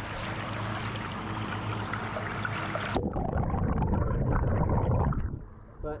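Creek water rushing over rocks and through a sluice box set in the current. A little past halfway the rush turns louder and duller for about two seconds, then drops away near the end.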